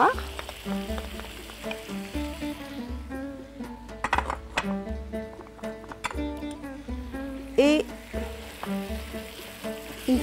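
Squid, shrimp and button mushrooms sizzling as they are seared in a hot wok and stirred with a wooden spatula. Background music with a steady beat plays over it, and a few clinks come a few seconds in.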